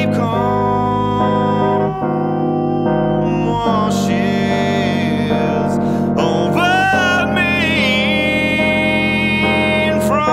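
A man singing a slow song to his own accompaniment on an electric piano, which holds sustained chords beneath the voice.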